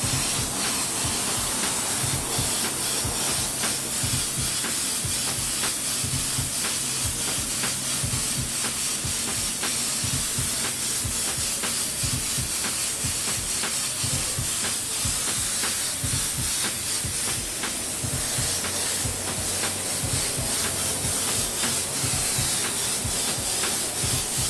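Airbrush spraying paint onto a t-shirt: a steady, continuous hiss of compressed air, unbroken throughout.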